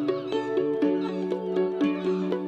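Violin playing a line of short, quickly changing notes over a sustained low electronic tone, which steps up in pitch about half a second in; an instrumental passage for violin and electronics.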